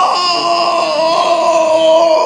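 A man's voice holding one long, high-pitched wailing cry of 'no!' in Hebrew ('lo'), an acted imitation of someone screaming in distress. The pitch stays nearly level, wavering slightly.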